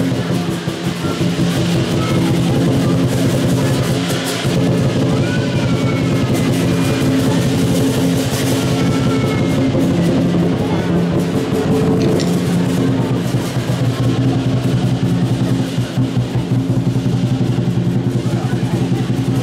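Chinese lion dance drum beaten in a fast, steady, loud rhythm, with the clash of the accompanying cymbals.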